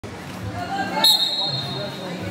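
A referee's whistle blows once, about a second in: a single steady, shrill tone that cuts in sharply and fades over just under a second, over voices in a gym.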